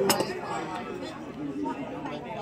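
Low, indistinct chatter of voices in a restaurant dining room, with one short clink of tableware right at the start.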